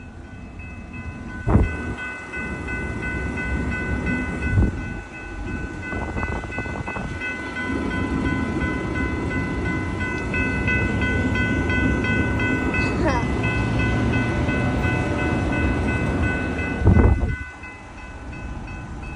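Amtrak passenger train rolling through a level crossing, its wheels rumbling and clattering on the rails, growing louder over the second half. The crossing's warning bell rings steadily throughout. There are two sharp knocks, one about a second and a half in and one near the end.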